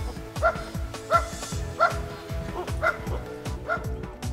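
A dog barking: about five short barks spaced under a second apart, over steady background music.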